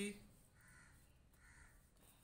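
Faint cawing of a crow: two short caws less than a second apart, over near silence.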